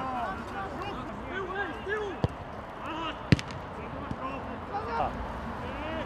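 Footballers shouting short calls to each other across the pitch, with two sharp thuds of the ball being kicked, a bit over two seconds in and again about a second later; the second kick is the loudest sound.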